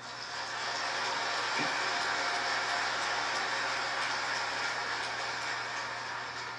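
Audience applauding in a large hall. The clapping swells over the first second, holds steady, and begins to thin out near the end.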